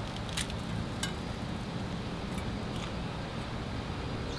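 A man bites into and chews a piece of crispy breaded, deep-fried copperhead snake; the frying has softened its rib bones. A couple of faint crunches come about half a second and a second in, over a steady low background hum.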